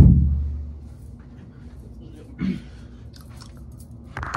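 A sudden heavy thump right at the microphone, its low boom dying away over about a second, then a smaller knock about two and a half seconds in, with faint close rustling between.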